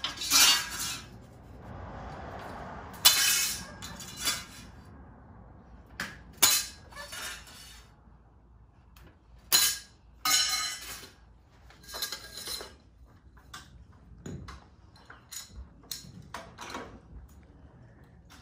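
Perforated steel angle iron being handled and cut with a long-handled cutter on concrete: irregular sharp metallic clanks and clinks, each with a short ring, the loudest ones in the first two-thirds.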